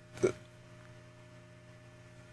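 A woman's single quick laugh, a short vocal burst about a quarter of a second in, over a low steady electrical hum.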